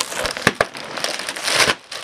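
Foil (mylar) helium balloon crinkling and crackling as it is squeezed while helium is sucked from its neck. There are sharp clicks about half a second in and a longer rush of noise in the second half.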